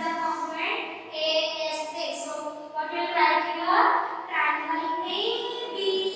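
A girl's voice speaking slowly, with long drawn-out, sing-song words.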